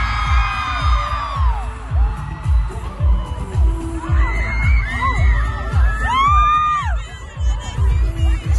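Live pop concert music from the floor, with a heavy kick-drum beat about twice a second. High-pitched screams from fans in the crowd rise and fall over the music, most strongly in the second half.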